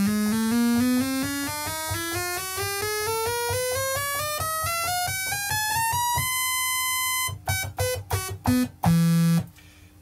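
Moog Rogue analogue monosynth on a single oscillator, a bright buzzy tone playing a rising chromatic run up the keyboard at about four notes a second, to show that every key sounds. It holds the top note about six seconds in, then plays a few short notes and a low note before stopping near the end.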